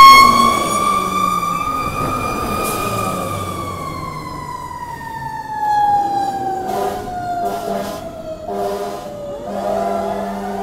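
Fire engine siren wailing as the engine passes close by, loudest at first, then a long slow fall in pitch as it pulls away. A few seconds from the end comes a run of short horn blasts, and near the end another siren starts to rise.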